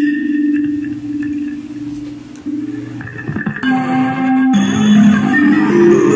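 Electric HARPLIMBA, a kalimba-type instrument with a pickup, played through a preamp and amp. Plucked metal tines ring on and fade, then a gritty, harmonically rich run of notes climbs a harmonic minor scale, starting a little past halfway.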